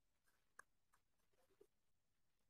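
Near silence on the voice call, with a few very faint clicks, the clearest about half a second in.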